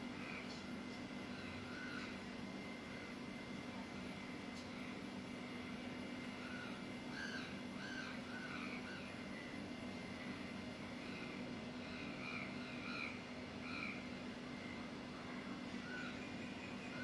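Birds calling, short calls repeated at irregular intervals throughout, over a faint steady low hum.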